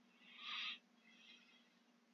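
Near silence: a faint low hum, with one brief faint sound about half a second in.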